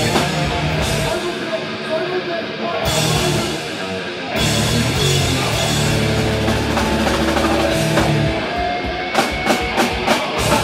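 A death metal band playing live: distorted electric guitars, bass and a drum kit. The low end thins out about a second in, and the full band comes back in heavily about four seconds in. Sharp drum hits come near the end.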